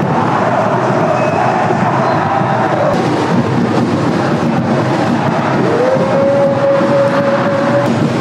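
Football stadium crowd chanting and singing in the stands, a steady din of many voices, with a long held note coming in a little past halfway.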